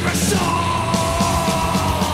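Thrash metal band recording: distorted guitars, bass and fast drumming, with a long held high note coming in about half a second in.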